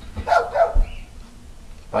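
A dog outside barking twice in quick succession, heard through an open screen door.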